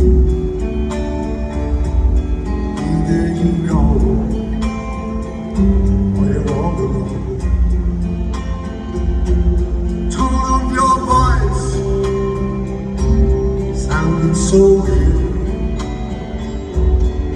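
Live acoustic guitar being fingerpicked through a slow instrumental passage, over deep held bass notes, heard through a large arena's PA.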